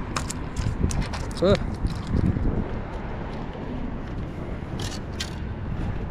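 Wind buffeting the microphone, with a quick run of sharp clicks and knocks over the first two seconds and two more near the end, as a just-landed pompano and the fishing tackle hit the concrete pier deck. A short grunt comes about a second and a half in.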